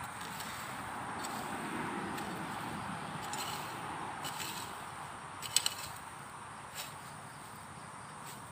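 A hoe chopping into hard ground and grass, a few sharp strikes, the loudest a double strike about five and a half seconds in, over steady traffic noise.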